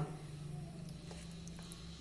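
Quiet room tone with a faint, steady low hum.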